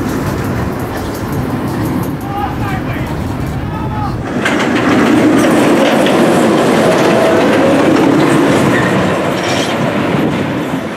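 Rocky Mountain Construction hybrid roller coaster train running over its steel track on a wooden structure: a steady rumble of wheels on rail that grows louder about four and a half seconds in, with faint rider screams early on.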